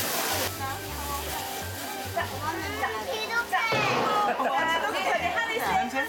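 Children's voices talking over background music.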